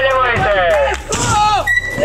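A man's voice, an MC calling out loudly to the crowd at a BMX contest, urging them on.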